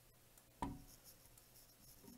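Near silence, with one faint click about half a second in and light scraping as a screwdriver works the reset screw of a fire alarm pull station whose cover has just released.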